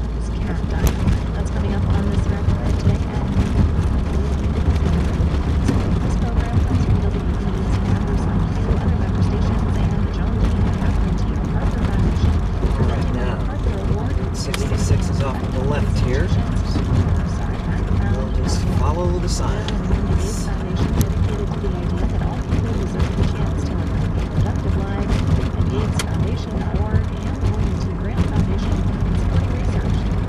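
Steady engine and road noise inside the cabin of a moving Pontiac Fiero, with low talk from the car radio underneath.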